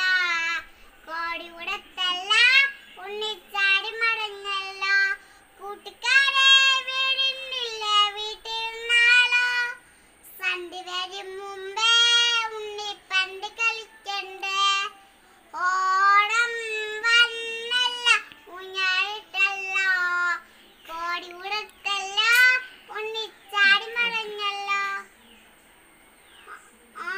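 A young girl singing a song alone without accompaniment, her high child's voice holding and gliding through notes in phrases separated by short breaths, with a pause near the end.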